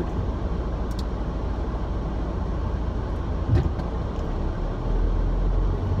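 Steady low rumble inside a car's cabin with the engine running, swelling slightly near the end.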